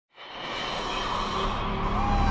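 Electronic intro music swelling in from silence as a rising whoosh, with a high whistle starting to glide downward near the end.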